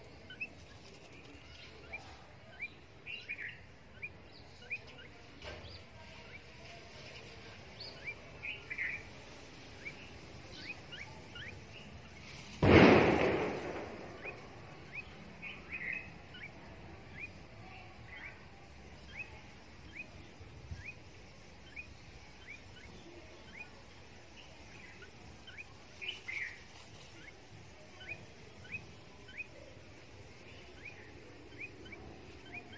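A small bird chirping over and over in short, high, downward-sliding cheeps, roughly once or twice a second. About halfway through, a single loud burst of noise fades out over about a second.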